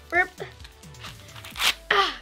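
Green husk leaves being ripped by hand off an ear of corn: a short, sharp tearing rasp about a second and a half in.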